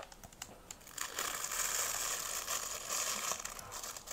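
Thin hot-foil transfer sheet being peeled back off a plaster surface after ironing: a continuous crinkling and crackling that starts about a second in.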